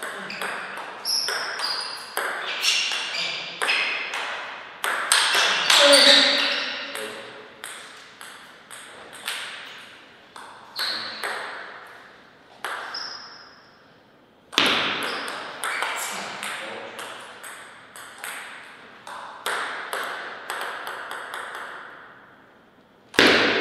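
A table tennis ball clicks back and forth between paddles and table, each sharp hit echoing briefly. There are two rallies of quick strikes, with a pause of a few seconds between them after the first point ends.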